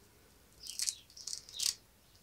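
Three short, soft rustles about half a second apart: fingers handling a tiny flocked toy rabbit figure and its small fabric outfit.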